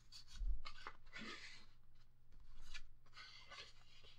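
Cardstock journaling cards sliding against each other and rustling as they are pulled out of a paper pocket and shuffled by hand, in a few short scraping bursts with a soft bump about half a second in.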